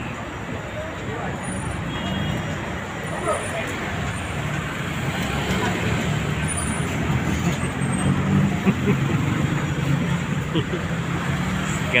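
Busy street traffic with vehicle engines running close by, a steady low engine hum under the general roadway noise.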